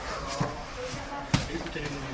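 Grapplers in gis sparring on foam mats: two sharp knocks, a light one about half a second in and a louder one just past a second in, over voices in the background.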